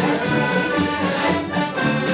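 Live folk dance band led by accordions playing a dance tune with a steady beat.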